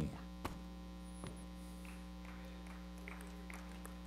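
Steady low electrical mains hum in the microphone and sound-system signal, with a faint tick about half a second in and another just over a second in.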